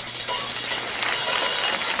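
Solo on a jazz drum kit: fast, continuous stick work under a steady wash of ringing cymbals.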